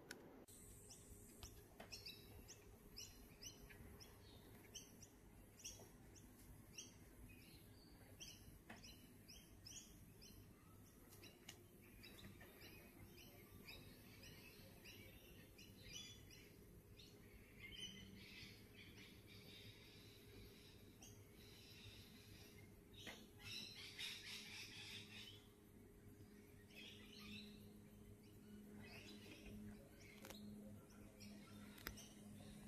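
Faint birdsong: small birds giving many short, high chirps over and over, a little busier about two-thirds of the way through.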